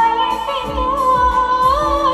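A woman singing a romantic song live into a handheld microphone over backing music with a steady beat. She holds one long, wavering note that rises near the end.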